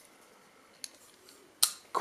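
Bestech Predator titanium frame-lock flipper knife worked by hand: a faint click, then a sharp metallic snap of the blade moving on its ball-bearing pivot about one and a half seconds in, and a lighter click just after.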